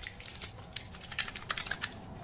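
A quick, irregular run of light, sharp clicks, several a second.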